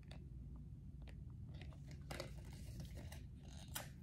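Faint handling noise from cosmetics packaging: a few scattered soft clicks and crinkles over a steady low hum.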